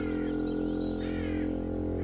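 A bird chirping in short, falling calls about once a second, over a low, held musical drone.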